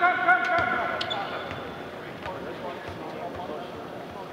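A long, held shout of "go" over the hubbub of players on a basketball court, with scattered sharp thumps of basketballs bouncing on the hardwood, echoing in a large empty arena.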